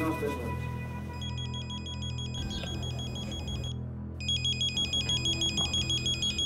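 A phone ringing with an electronic ringtone, a fast warbling trill. It starts about a second in, breaks off briefly near four seconds, and comes back louder.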